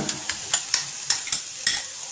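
A metal spoon scraping and clinking against a glass cup as tomato paste is knocked out into the pot: a string of sharp, irregular clinks. Under it, onion and garlic sizzle steadily in hot oil.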